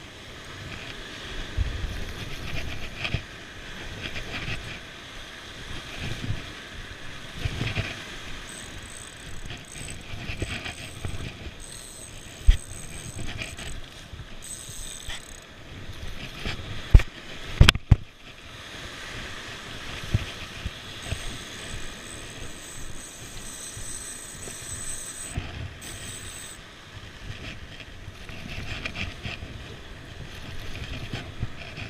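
Van Staal VS150 spinning reel cranked steadily as a hooked bluefish is retrieved through the surf, a mechanical whirring under wind noise on the microphone. A few sharp knocks come about halfway through and again a few seconds later.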